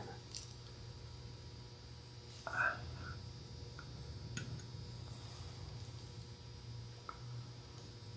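Quiet room tone with a steady low electrical hum. A brief faint murmur comes about two and a half seconds in, and a few faint light clicks follow later.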